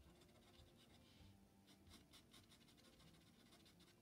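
Faint scratching of a Derwent charcoal pencil stroked across black drawing paper in quick, repeated shading strokes, thickest about halfway through.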